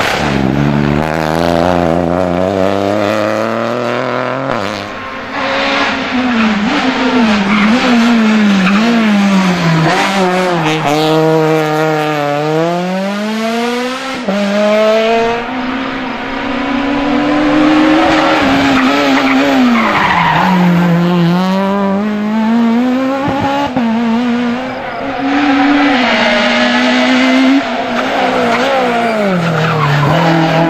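Rally car engines, a Peugeot 208 and then a Renault Clio among them, worked hard through a hairpin one after another. Each engine's pitch drops as the car brakes and downshifts into the turn, then climbs in steps as it accelerates away through the gears.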